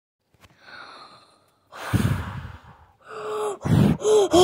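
A person's breathing close to the microphone: a soft breath, then a loud breathy rush like a gasp or sigh, and a short voiced sound falling in pitch near the end.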